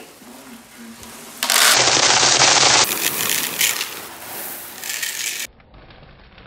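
Dried chickpeas pouring from a bag into an empty plastic bucket: a dense rattling hiss that starts about a second and a half in, is loudest for the first second or so, then carries on more softly and cuts off suddenly near the end.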